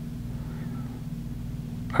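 Steady low hum of the room's background noise, with a faint, brief gliding sound about half a second in.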